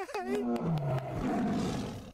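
Tiger roaring: one long, low, rough roar that starts about half a second in and falls in pitch as it goes.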